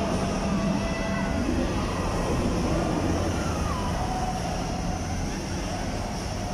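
Steady low rumble of a big spinning amusement ride running, the Riddler Revolution's ring-shaped gondola in motion, with faint distant voices over it.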